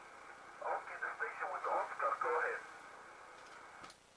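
Single-sideband voice from a Yaesu FT-1000MP Mark V transceiver's speaker on 10 metres: a distant station talks for about two seconds, thin and narrow, over a steady band hiss that carries on after the voice stops.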